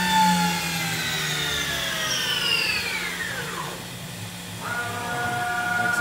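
Spindle of a Mazak VCN-530C-II 50-taper vertical machining center winding down from about 5,500 RPM: its whine falls steadily in pitch and dies away about four seconds in, over a constant low hum. Shortly afterwards a different steady whine starts up.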